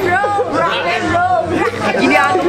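Several people's voices talking over one another, with no clear words.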